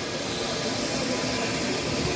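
Steady rushing hiss of a business jet's turbine engines idling, with a faint thin whine held underneath.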